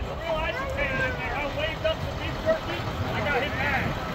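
Steady low rumble of monster-truck tour vehicles' engines and big tyres on the move, with passengers' voices chattering over it.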